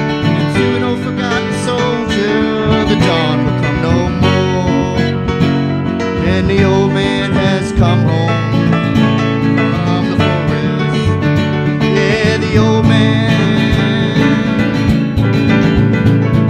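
Acoustic guitar strummed together with a keyboard in an instrumental break of a folk song, with no singing.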